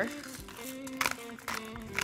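Background music with held notes, over a few sharp crunching clicks from a hand pepper mill grinding black pepper.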